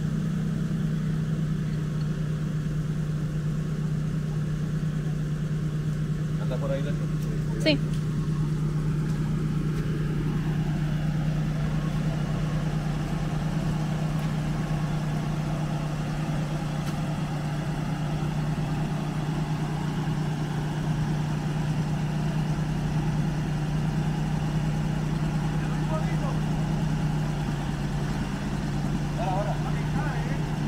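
Off-road truck engine idling steadily, a constant low hum, with one short knock about eight seconds in.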